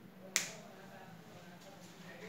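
A single sharp click about a third of a second in, fading quickly.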